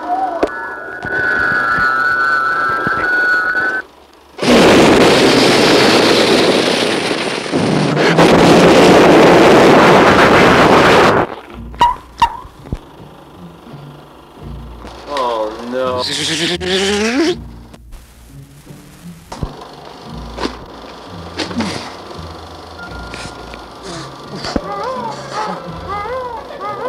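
Homemade film sound effects of a small spaceship coming in to land and crashing: a steady high electronic warble, then about seven seconds of loud rushing noise in two parts, followed by scattered clicks and swooping whistled beeps.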